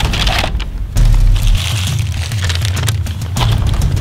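Paper fast-food bag rustling and crinkling as it is handled, with a dull thump about a second in.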